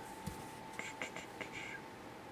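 Faint handling sounds of a hand and felt-tip marker moving over paper: a few short, soft brushes about a second in, over a faint steady tone.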